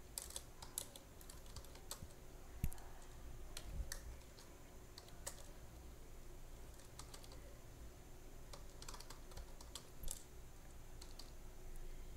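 Computer keyboard typing, faint, in irregular bursts of keystrokes with short pauses between them.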